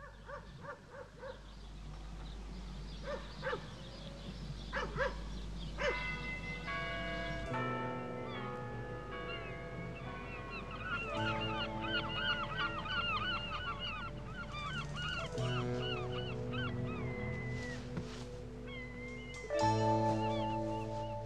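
Short honking bird calls, repeated in small clusters, for the first few seconds. Then music with long held notes comes in about six seconds in, and rapid high chirping runs over it from about ten seconds.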